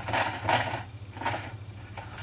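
Quick bursts of clicking from scrolling back through a terminal on a computer, a few in the first second and a half, then stopping, over a low steady hum.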